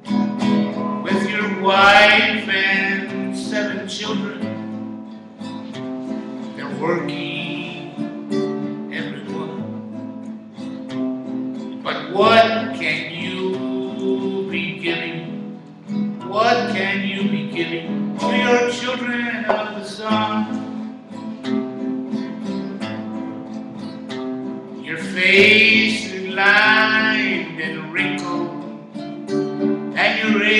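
A man singing a slow song to his own strummed acoustic guitar. Sung lines come every few seconds between stretches of guitar.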